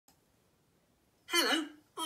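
Near silence, then about a second and a half in a man's cartoon-character voice speaks a short opening word, the start of a spoken self-introduction.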